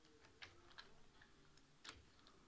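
Near silence with a few faint, irregular clicks, the loudest shortly before the end.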